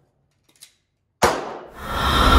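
A single handgun shot about a second in, sharp and loud, its report trailing off over about half a second. A faint click comes just before it, and theme music swells in near the end.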